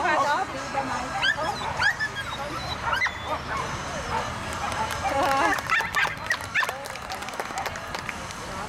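A dog barking repeatedly in short, high barks, over people's voices.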